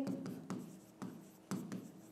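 Chalk writing on a blackboard: four short scratches and taps, about half a second apart.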